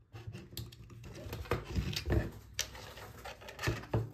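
Irregular clicks and light taps of small metal parts being handled: a hex screwdriver working on a screw, and an aluminium plate with its screws. A low steady hum runs beneath.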